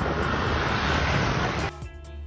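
Loud, steady rushing noise of wind on a phone microphone, recorded outdoors; near the end it cuts off suddenly and background music takes over.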